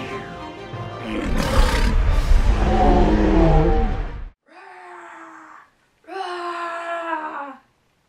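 Loud dramatic music that cuts off abruptly about four seconds in, followed by two growling roars from a woman's voice imitating a dragon, each over a second long.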